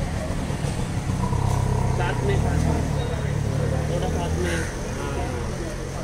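Outdoor background chatter of several voices, with a motor vehicle's engine running low underneath, loudest through the middle few seconds.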